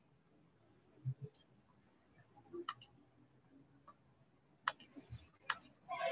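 Faint, scattered clicks of a computer mouse, four or five sharp ones spread over the last few seconds, with a few soft low bumps in between, as a screen share is being set up.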